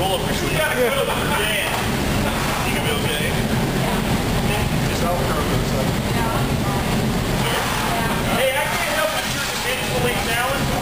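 Indistinct talk among several people over a steady low background rumble; no gunshots.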